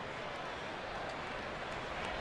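Steady murmur of a ballpark crowd, an even background hum with no single sound standing out.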